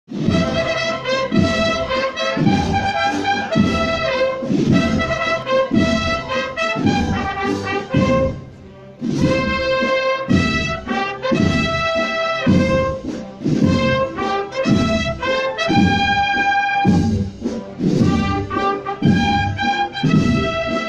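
Brass band playing a processional march: held brass melody notes over a steady low beat about twice a second, with a brief drop in loudness about eight seconds in.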